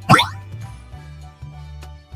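A short cartoon sound effect, a quick rising swoop in pitch lasting a fraction of a second, as new letters appear on screen. It plays over soft background music with a steady bass line.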